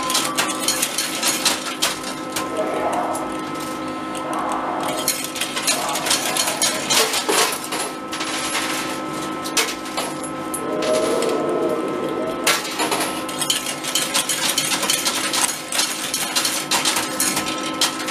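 Coin pusher arcade machine being fed coins: a run of metallic clinks and clicks as coins drop onto the moving pusher shelf and the coin field, over a steady machine hum.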